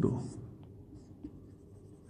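Faint strokes of a felt-tip marker on a whiteboard as a small figure is drawn, with a man's last word trailing off at the start.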